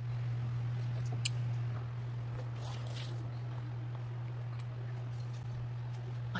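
Steady low hum, with a single sharp click about a second in and faint rustling around the third second.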